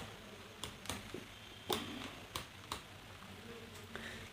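A few faint, sharp clicks and taps from hands handling a plastic rechargeable LED emergency light near its control knob, over a low steady hiss.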